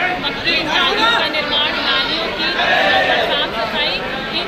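Speech only: a woman talking into reporters' microphones, with the chatter of other voices around her.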